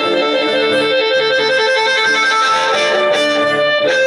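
Blues harmonica played into a cupped hand-held microphone, holding long reedy notes that change pitch a few times, over a strummed acoustic guitar.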